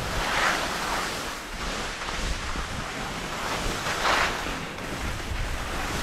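Skis hissing and scraping over chopped-up packed snow through turns, with wind rushing over the microphone; louder swishes come about half a second in and about four seconds in.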